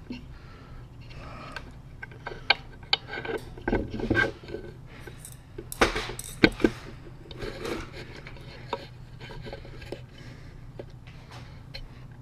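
Handling noise from a camera being moved and repositioned: scattered clicks, knocks and rubbing, loudest around four and six seconds in, over a faint steady low hum.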